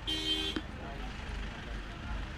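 A short car horn toot lasting about half a second, two steady tones together, then a steady low rumble of car engines.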